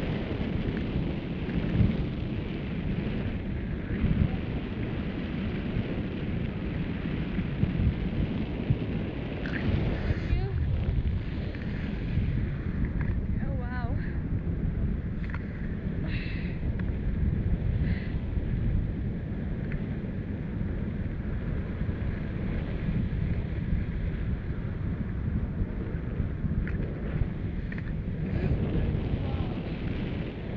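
Steady rumble of air rushing over a camera microphone carried on a tandem paraglider in flight, with a few faint brief sounds in the middle.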